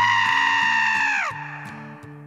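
A long, high-pitched yell, held steady and then dropping in pitch as it cuts off about a second in, over light background music.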